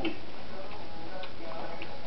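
Steady background hiss with a few faint, irregular clicks and faint short tones.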